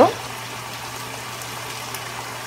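Chicken breasts cooking in a frying pan on the stove, a steady, even sizzling hiss over a steady low hum.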